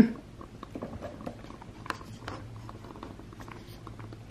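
A short laugh, then faint scattered clicks and rustles of a camera being handled and repositioned, over a low steady hum.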